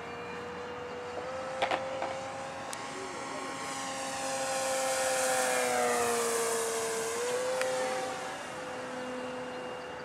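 Electric RC P-47 Thunderbolt model's brushless motor and propeller whining steadily in flight. It makes a low fly-by about five seconds in, growing louder with a rushing whoosh, and the pitch dips briefly as it passes before settling back.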